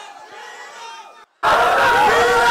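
A crowd of many overlapping voices chattering, cut off briefly about a second in, then coming back much louder as a crowd shouting and cheering.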